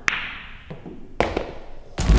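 Pool balls clicking on a pool table: a sharp click at the start, then a quick cluster of two or three clicks a little past the middle, as a cue strikes the cue ball and the balls collide.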